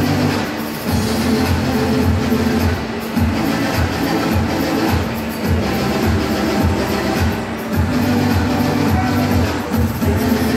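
Loud fairground dance music with a heavy, steady beat from a thrill ride's sound system, with the rumble of the spinning ride's machinery underneath.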